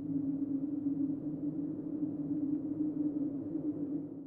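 Low, steady drone sound effect: one held low tone with a rough, grainy texture, beginning to fade out near the end.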